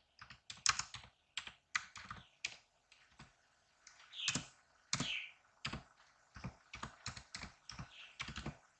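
Computer keyboard keys being typed, a run of quick, uneven keystrokes with a short pause about three seconds in.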